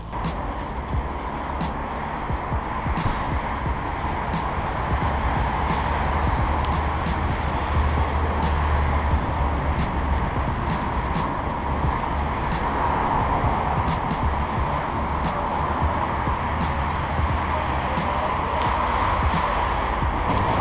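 Background production music with a steady beat, over the steady rush of wind and tyre noise from a bicycle ride.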